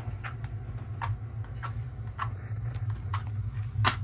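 A few small irregular clicks and taps of a matchbox being handled, then a louder sharp strike just before the end as a wooden match is lit. A steady low hum runs underneath.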